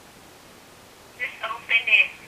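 Faint steady room hiss, then a little past halfway a woman's voice comes through a phone speaker, thin and tinny with no low end.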